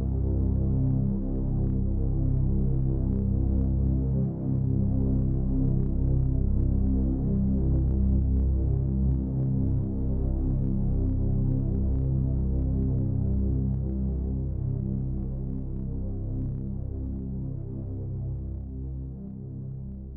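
Low droning background score: dense low chords held and shifting slowly, easing down in level near the end.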